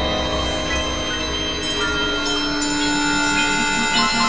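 Dense layered experimental electronic music: many sustained synthesizer-like tones sound at once. A deep low drone drops away about half a second in, and a fast even pulsing comes in from about halfway.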